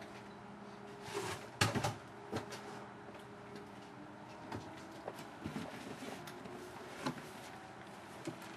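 A few soft knocks over a faint steady hum. The loudest knock comes about one and a half seconds in, a smaller one follows a second later and another comes near the end. There is no thunder.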